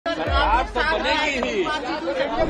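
A press scrum: several people talking over one another at once, with a low rumble underneath.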